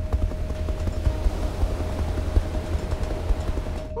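Helicopter running with a heavy, uneven low rumble and wind buffeting the microphone at the open cabin door, over a steady high tone.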